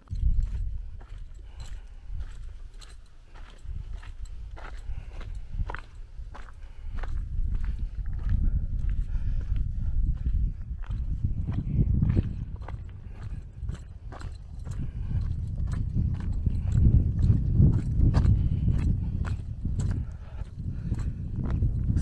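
Footsteps on dry grass and stony ground, a steady run of short crunching steps, over a low, gusting rumble of wind on the microphone.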